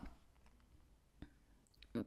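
Near silence with quiet room tone, broken by one faint click a little past halfway and a couple of small ticks just before speech resumes.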